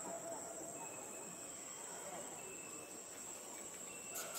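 A steady, high-pitched chorus of insects droning in the forest, with a few faint short whistled tones over it.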